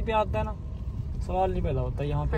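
Car cabin noise on the move: a steady low rumble of engine and road, with a voice talking briefly at the start and again from about halfway through.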